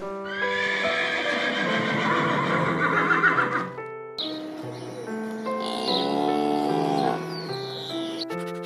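Horse whinnying: a long, wavering neigh lasting about three seconds, then a second, shorter call a few seconds later, over background music.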